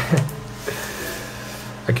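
Rustling of a plastic sheet-protector page being turned in a drawing binder, a soft crinkly hiss lasting about a second, followed by a man starting to speak near the end.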